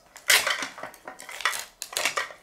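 Hard plastic surprise-ball capsule being handled and opened: irregular clicks and clatter of plastic parts, with some rustling of a small wrapper.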